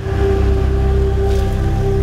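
Dramatic background score: a steady drone of held notes over a loud, even hiss-like noise bed, starting abruptly at a scene cut.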